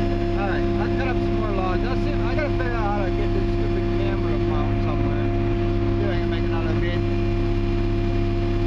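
Diesel engine of a heavy logging machine, heard from inside its cab, running at a steady pitch with no revving.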